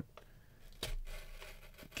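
A small handheld cutter slicing through the seal sticker on a cardboard trading-card box: a sharp click a little under a second in, then a faint scraping tear.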